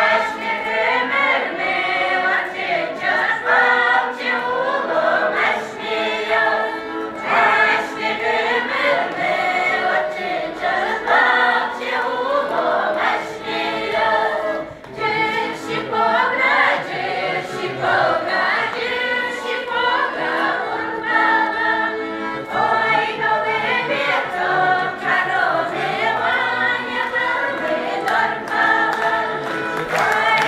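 An Udmurt village folk ensemble of women and men sings a folk song together in chorus, in continuous phrases.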